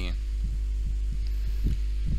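Steady electrical hum on the recording, typical of mains hum, with a few soft, irregular low thumps.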